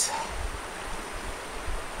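Shallow stream water running and rippling, as a steady wash with a low rumble of wind on the microphone.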